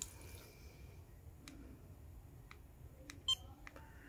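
Faint clicks of buttons being pressed, then about three seconds in a short electronic beep from a Flipper Zero as it picks up the car key remote's signal.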